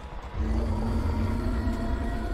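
Low rumble with steady sustained drone tones from a TV drama's soundtrack, swelling up about half a second in.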